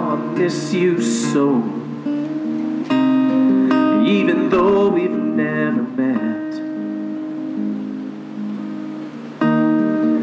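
Steel-string acoustic guitar strummed in full, ringing chords, with a man singing over them. Fresh strums land about three seconds in and again near the end, and sung lines come near the start and around four to five seconds in.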